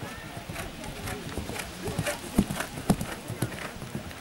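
A pony's hooves striking a sand arena at a canter: a steady run of thudding hoofbeats, two of them louder a little past the middle.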